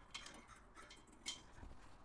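Near silence, with a couple of faint clicks of the metal safety chain around the propane tank, one at the start and one a little over a second later.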